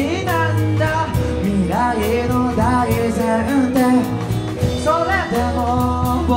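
Live rock band playing: a male lead vocal sings over a steady drumbeat, bass, and acoustic and electric guitars.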